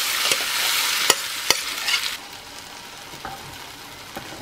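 Chopped onion, tomato and capsicum mixture sizzling loudly as it goes into hot mustard oil in a frying pan, with a few sharp knocks against the pan. About two seconds in, the sizzle drops to a much quieter frying hiss.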